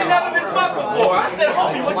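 Men's voices speaking over crowd chatter in a large room.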